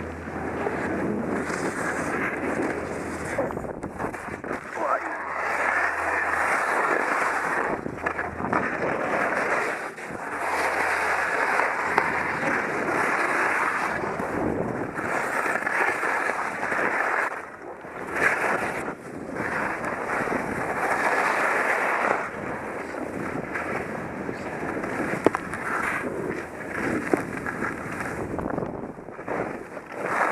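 Skis scraping over packed, bumpy snow through a series of turns, the noise swelling and easing with each turn, with wind buffeting the helmet-mounted camera's microphone.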